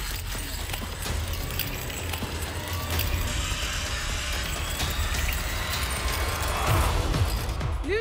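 Zip line trolley pulleys running along a steel cable, a steady whirring hiss with scattered clicks, over background music with a steady bass beat.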